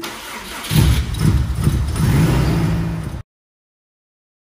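Subaru EJ205-based forged 2.1-litre stroker flat-four, turbocharged, being cranked on its first start after the build and catching under a second in, then running unsteadily. The sound cuts off suddenly about three seconds in.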